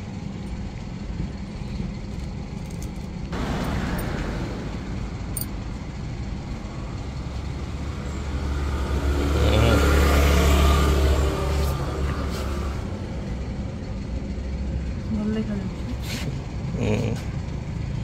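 Street traffic: a low engine rumble throughout, with a vehicle passing that swells to its loudest about ten seconds in and fades away, over background voices.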